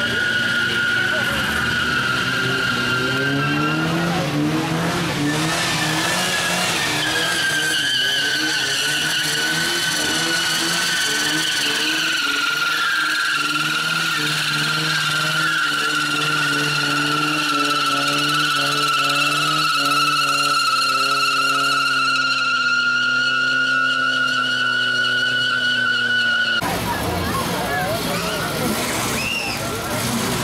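Car tyres squealing continuously in a burnout, a steady high-pitched screech, while the engine is held at high revs that step up and down. The sound breaks off abruptly shortly before the end.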